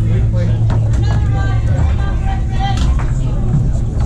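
Background rock music and indistinct voices fill the room. A few sharp clacks come from the foosball table's rods and ball during play.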